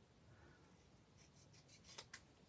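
Near silence, with faint snips of small scissors cutting through a scrap of white cardstock. A few soft clicks come in the second half, the clearest near the end.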